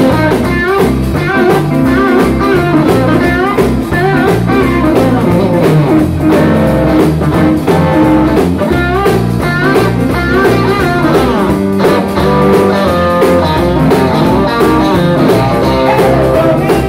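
A live rock band plays an instrumental passage on electric guitars and a drum kit, with a lead guitar line of bent and sliding notes over a rhythm backing.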